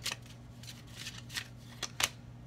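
A deck of oracle cards shuffled by hand, giving several soft, irregularly spaced card clicks.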